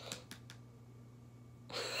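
A few faint clicks in the first half second, then an adult starts laughing near the end.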